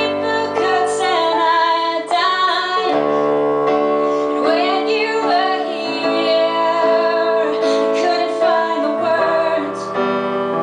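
A woman singing a slow, unreleased song live at the microphone, backed by piano chords.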